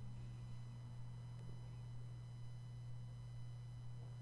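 A faint, steady low hum with a faint hiss, unchanging throughout.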